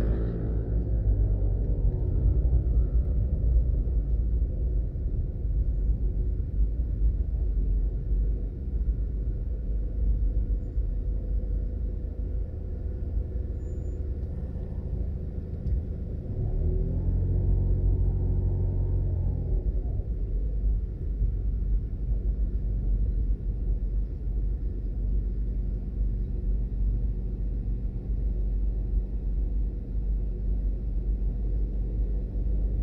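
Steady low rumble of car engine and road noise heard from inside a moving car. About 17 seconds in, an engine note rises and holds for a couple of seconds, then falls away.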